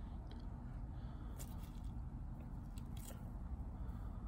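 A Muscovy duck pecking at bread on dry grass: a few faint, short pecking clicks about a second and a half in and again near three seconds, over a steady low rumble.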